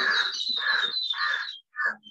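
Birds calling: a quick series of short, noisy calls, about one every half second, over a higher, thin trilling call that stops about one and a half seconds in.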